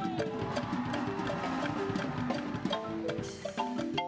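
Live marimba music: a Musser marimba played with mallets, fast runs of ringing wooden-bar notes over percussion strikes.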